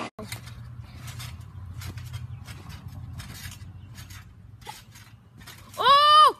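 Trampoline springs clinking and creaking in short, irregular clicks, roughly two a second, as a child bounces, over a low steady hum. Near the end a voice briefly cries out, rising and falling in pitch.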